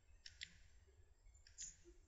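Two faint computer mouse clicks in near silence, one just under half a second in and another near the end.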